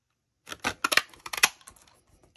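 Handheld whale-shaped craft paper punch pressed down through cardstock: a quick run of sharp clicks and crunches starting about half a second in, loudest near the middle.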